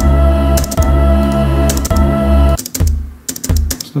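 Electronic drum-machine tom sounds played back in a music program: a low pitched tone held for over two seconds, then a few short tom hits that drop quickly in pitch, with the clatter of a computer keyboard being typed on in between.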